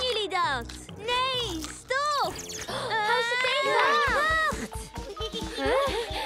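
Wordless cartoon character vocalisations, squeaky rising-and-falling cries and exclamations, over background music. About two-thirds of the way through, quick low pulses start, about five a second.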